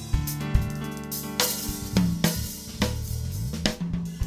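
A live instrumental band playing: a drum kit with snare, cymbal and bass drum hits over electric bass and keyboard, with a rising bass slide near the end.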